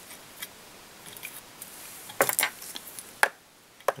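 Small clicks and taps from fly-tying tools being handled at the vise, with two loud sharp clicks a little past two seconds in and another just after three seconds.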